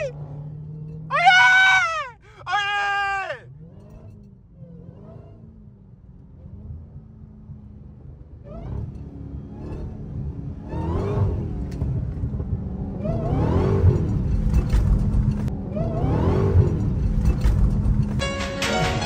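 Dodge Hellcat's supercharged V8, heard from inside the cabin, drones steadily and then revs up and drops back three times in the second half as the throttle is pressed with traction control off on a wet road. Near the start there are two loud high-pitched whoops.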